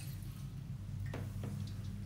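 A steady low hum with two faint, light clicks a little over a second in, as the ceramic cistern lid with its flush-button pins is handled.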